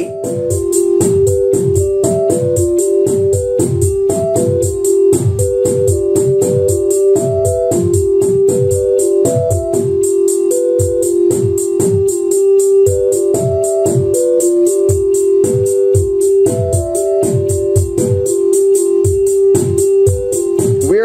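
Eurorack modular patch playing: a synth voice sequenced by a Mutable Instruments Marbles random sampler plays short notes over a steady held tone. The notes hop among the same small set of pitches in random order, because Marbles' Deja Vu knob is turned right, off its locked-loop position. Under it are analog kick drum thumps that drop in pitch and a steady, fast high ticking, also triggered by Marbles.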